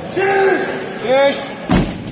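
A 470 kg tractor tyre slamming flat onto the floor about three-quarters of the way through: one heavy, deep thud. Men shout encouragement just before it.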